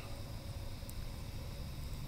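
Steady low background rumble and hiss, with one faint click about a second in.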